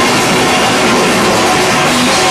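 A rock band playing loud and dense, with distorted electric guitars and a drum kit, recorded live.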